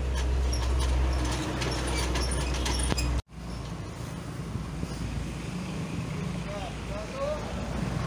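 Vehicle engines running in street traffic, a steady low rumble, with indistinct voices. The sound drops out sharply about three seconds in, then a rougher engine rumble follows.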